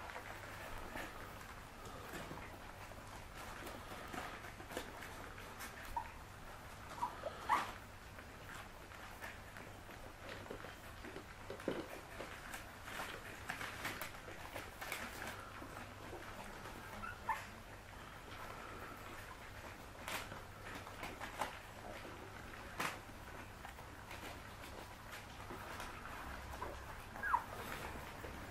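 A litter of young puppies eating together from food bowls: scattered soft clicks and clatter of mouths and bowls, with a few brief high squeaks now and then.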